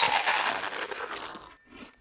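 Cartoon sound effect of a penguin crunching a mouthful of snack food, with the crinkle of a plastic snack bag. The crunching fades over about a second and a half, and a short crunch follows near the end.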